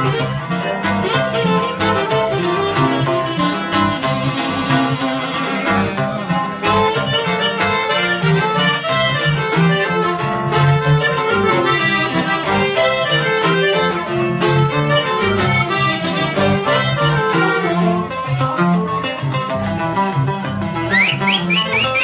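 Live band music in a norteño style: button accordion, saxophone and electric bass playing a steady dance rhythm.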